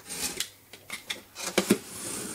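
Craft knife slicing through paper tape along the seam of a cardboard carton: a few short, scratchy scraping strokes, the loudest near the end.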